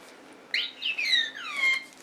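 R2-D2-style beeping and whistling: a quick run of chirps that sweep up and down in pitch, starting about half a second in and lasting over a second.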